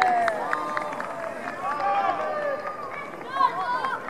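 Several voices shouting and calling out over one another as a goal goes in during a football match, with a louder shout about three and a half seconds in.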